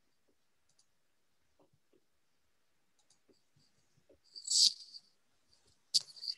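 Faint scattered clicks with a short rustling hiss about four and a half seconds in, picked up by a video-call microphone while a computer is being worked, typical of mouse and keyboard handling while setting up a screen share.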